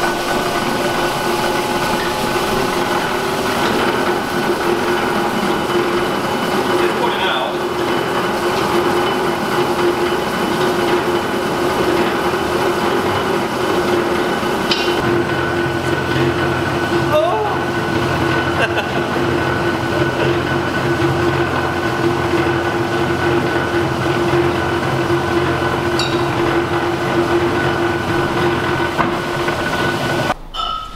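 Motorised sheet-metal rolling machine running with a steady mechanical whine while a strip of 2 mm aluminium cut from a scaffold tube is passed through its rollers to flatten it. A deeper hum joins about halfway through.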